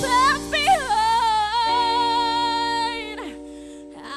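A teenage girl singing into a microphone over instrumental accompaniment. She slides up into one long held note that fades and drops away about three seconds in, while the sustained backing chords carry on.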